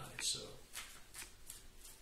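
A deck of tarot cards shuffled by hand: about four short, light card flicks spread over a second or so.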